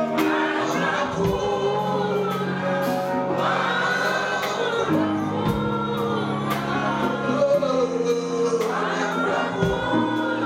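A congregation singing a gospel worship song together over held instrumental chords and a steady beat. The chords change a few times.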